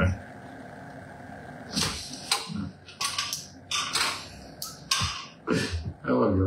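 Sheets of printer paper being handled and rustled on a wooden table: from about two seconds in, a run of short crackles and taps as the pages are shuffled and set down.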